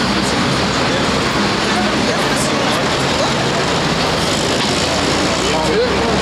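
Steady street traffic noise from passing cars, with indistinct voices of people talking nearby.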